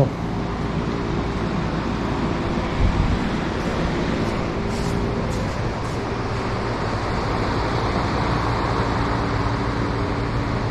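Steady whooshing drone of an electric shop fan running, with a low electric hum under it and a soft thump about three seconds in.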